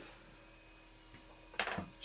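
A Bedini SSG pulse circuit driving a slayer exciter Tesla coil gives a faint, steady electrical whine and hum. A short, sharp noise cuts in near the end.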